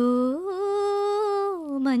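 A voice singing one long held note with no words. It steps up in pitch about half a second in, holds steady, and falls back near the end.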